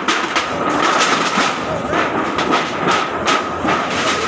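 Repeated knocks and clatter of wooden boards and scrap being loaded onto a dump truck, over a steady high hum and background voices.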